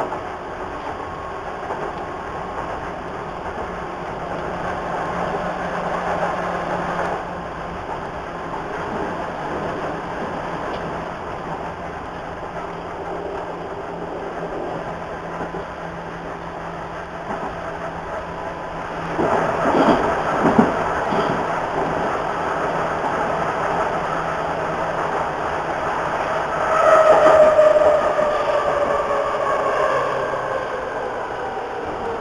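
A Hamburg U-Bahn DT3-E metro train running, heard from inside: steady rolling noise with a low motor hum. About two-thirds of the way in there is a few seconds of louder wheel clatter, and near the end a louder whine falls in pitch.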